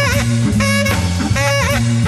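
Live jazz from an organ trio: tenor saxophone playing short phrases with wavering, bent notes over a low organ bass line.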